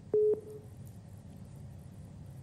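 A single short beep on the telephone call-in line, about a fifth of a second long just after the start, then faint steady line hiss.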